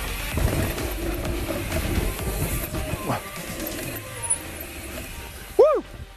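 Mountain bike riding a dirt trail, with a steady rumble of tyre and wind noise. Near the end there is a short rising-and-falling vocal whoop.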